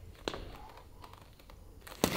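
A boxing glove striking a focus mitt, a loud smack right at the end, after a short sharp click about a quarter second in and a few faint ticks in a quiet gym.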